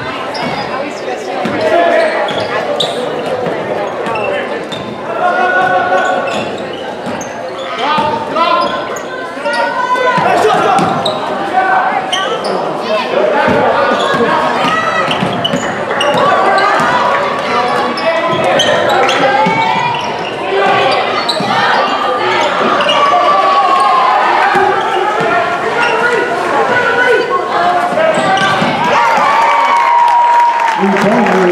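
A basketball being dribbled on a hardwood gym floor during live play, with many overlapping voices of players and spectators carrying through a large, reverberant gymnasium.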